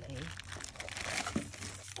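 Clear plastic film wrapped around a new brake disc crinkling as it is handled.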